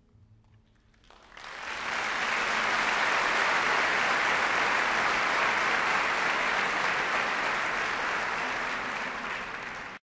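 Concert audience applauding, breaking out about a second in, swelling quickly and holding steady until it cuts off abruptly.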